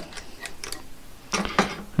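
Light metallic clicks and scraping of a brass .38 Special case being worked free from a station of an RCBS Green Machine linear progressive reloading press, where the case had caught on the mis-cycle. The clicks come thickest about one and a half seconds in.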